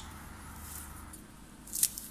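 Low, steady background noise with a single short, sharp click near the end.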